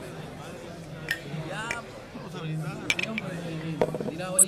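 Bar ambience: indistinct background chatter with several sharp clinks of glasses and dishes.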